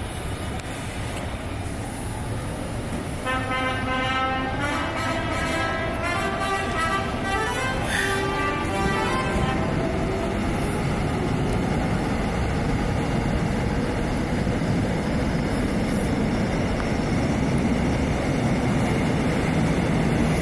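Electric train rumbling along a station platform, its steady noise slowly growing louder. From about 3 to 10 seconds in, a high tone with many overtones sounds over it and drifts a little lower in pitch.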